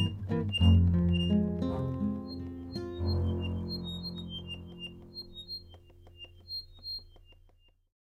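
Closing bars of an accordion, acoustic guitar and double bass trio: a few last notes, then a final chord from about three seconds in that slowly fades away. Short high chirping notes sound over the fading chord.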